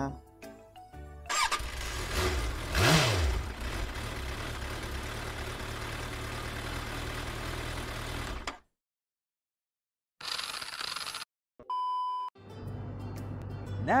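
Channel-intro sound effect of a car engine starting, revving once, then running steadily for several seconds before cutting off abruptly. After a short silence come a brief burst of noise and a short electronic beep.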